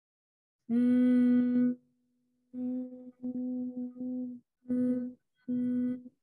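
Humming on one steady low note on the out-breath, for the bumblebee (bhramari) breathing exercise. It starts with one long strong hum under a second in, then goes on in several shorter stretches with brief breaks.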